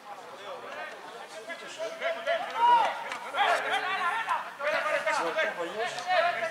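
Several men shouting and calling out, the words indistinct, growing louder about two seconds in.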